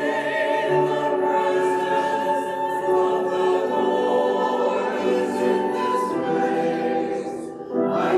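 Church choir singing a slow anthem in long held notes, accompanied by grand piano and flute. The phrase ends in a short break just before the end, and the next phrase begins.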